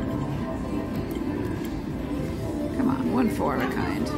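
Casino floor ambience: background chatter and electronic slot-machine music. A burst of rising and falling electronic tones comes about three seconds in.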